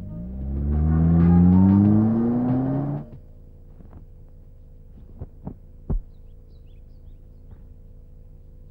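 Car engine revving up as the car pulls away, its pitch rising steadily for about three seconds before cutting off suddenly. A few soft knocks follow.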